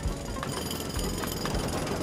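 Jackhammer (road drill) running, a cartoon sound effect of rapid, steady hammering.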